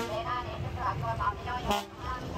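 Town street traffic: the rumble of passing vehicles, including a bus, under voices. A short sharp noise comes near the end.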